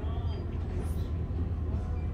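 Steady low rumble of indoor store background noise, with faint voices in the distance.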